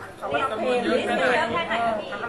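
Speech only: people talking in Thai.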